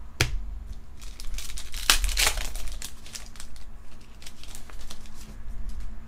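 A foil Pokémon booster pack wrapper crinkling and being torn open, with the loudest ripping about two seconds in. Light clicks and flicks of cards being handled follow.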